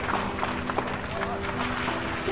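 Outdoor noise at a building fire: indistinct voices over a steady low drone, with scattered clicks and knocks throughout.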